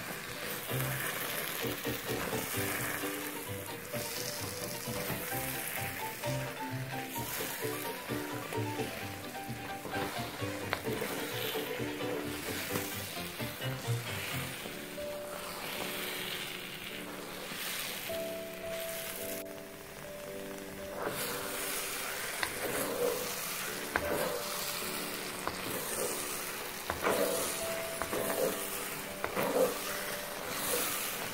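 Thick fig halwa sizzling in a wok while a spatula stirs and scrapes through it, over background music with a melody.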